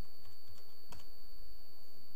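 A few keystrokes on a computer keyboard, the clearest about a second in, over a steady high-pitched whine.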